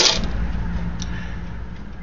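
Small metal finds handled over a stainless steel sink: a sharp click as one is set down among the others, then a lighter click about a second later, over a steady low hum.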